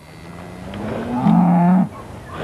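A cow mooing: one long, low call that grows louder, holds steady and then cuts off sharply just before the end.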